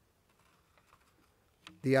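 Faint rustling and light ticks of paper sheets being handled and turned at a lectern, with a man's voice starting to speak near the end.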